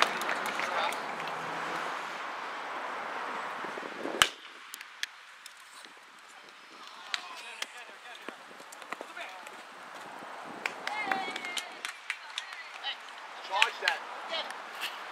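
Spectators' noise and chatter, then about four seconds in a single sharp crack as a baseball bat strikes the pitch. After it come a quieter stretch of scattered faint knocks and brief voices.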